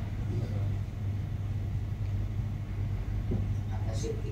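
A steady low hum with a faint rumbling background noise, no distinct events.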